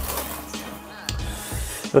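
Cardboard mailer box being opened and handled: soft rustling and scraping of the cardboard, with one light tick about a second in, over quiet background music.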